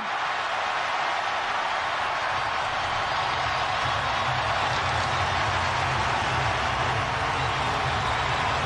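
Stadium crowd cheering a goal, a steady roar, with a low rumble joining about two and a half seconds in.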